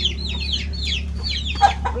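Chickens cheeping: a steady run of quick, high chirps, each falling in pitch, about five a second, with a louder, lower call near the end.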